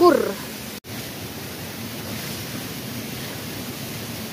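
Steady rushing hiss of outdoor background noise, after the tail of a spoken word and a brief dropout about a second in.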